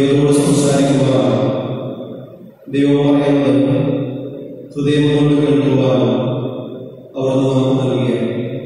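A man's voice chanting prayers on a steady, held pitch in four phrases of about two seconds each, every phrase starting loud and fading away.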